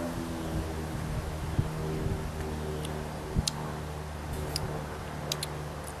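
A steady low hum made of several held tones, with a few short faint clicks scattered through it.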